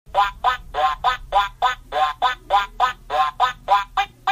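Duck quacks in a quick, evenly spaced run of about three a second, over a low steady hum.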